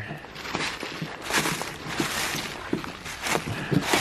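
Footsteps in dry fallen leaves and dead grass while climbing a steep bank: an uneven run of rustling, crunching steps.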